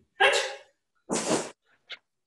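Man shouting two short, sharp counts about a second apart while punching in a karate drill, the second a barked "Ni!" (Japanese for two).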